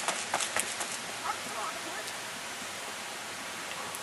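Running footsteps, a few quick footfalls at the start, then faint distant shouts and a steady outdoor hiss.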